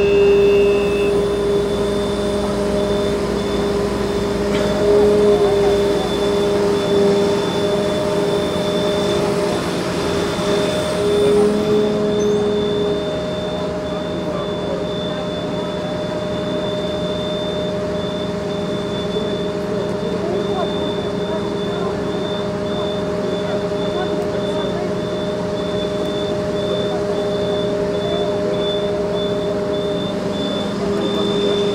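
Steady drone of a Magirus turntable-ladder fire truck's engine running to power the ladder, swelling briefly a few times in the first dozen seconds. A faint high-pitched broken tone runs along with it.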